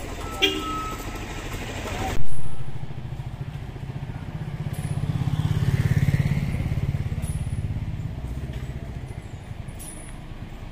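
A slow-moving road vehicle's engine running with a low rumble, growing louder to a peak about six seconds in and then fading. A brief loud burst comes about two seconds in.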